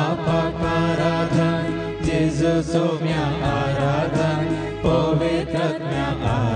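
A woman singing a devotional hymn into a microphone, with instrumental accompaniment and a steady bass line.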